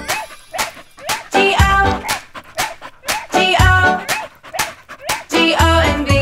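Puppy barks and yips over a sparse instrumental break in a children's nursery-rhyme song; the full backing with bass comes back in near the end.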